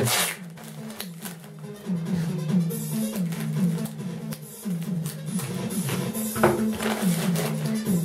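Background music with a repeating bass line, over the short rasping of clear packing tape being pulled off the roll and wrapped around a plastic-bag parcel.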